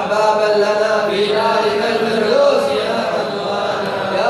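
A man's voice chanting a rhymed Arabic supplication (du'a) in long, drawn-out melodic notes, with slow rises and falls in pitch.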